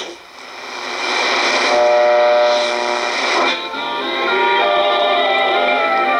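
Icom shortwave receiver in AM mode being tuned across the 25-metre broadcast band: a rush of static hiss at first, then broadcast audio with steady held tones, like music, coming in and shifting as the dial passes stations.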